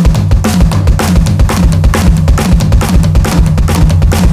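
Electronic drum kit playing a quick, even run of triplets: a repeating six-note lick across snare, high tom and floor tom, with a bass drum note landing at the end of each group of three.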